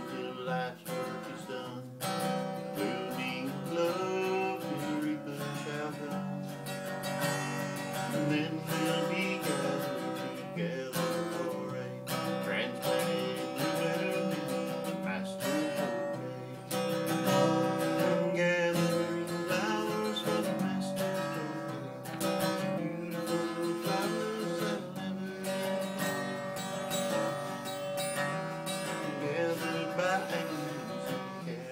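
A man singing the last verse of a song to his own strummed acoustic guitar.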